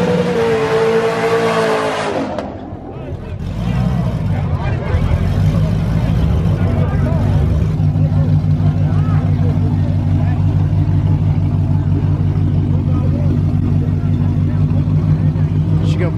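Tires squealing in one loud, steady high tone as a Ford Mustang GT's 5.0-litre Coyote V8 ends its burnout, cutting off about two seconds in. After a brief lull the V8 settles into a steady idle while the car sits at the line.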